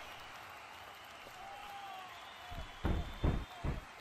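Steady arena crowd noise with a few faint whistles. About two and a half seconds in come three or four quick heavy thumps.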